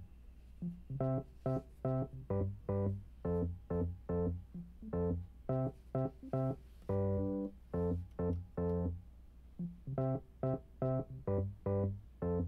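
Electric keys playing short, detached chords in a rhythmic pattern, two to three stabs a second, with one longer held chord about seven seconds in.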